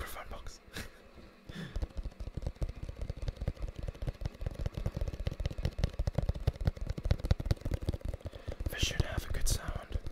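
Fast, continuous fingertip tapping on a cardboard product box held close to the microphone, beginning about one and a half seconds in after a few scattered taps.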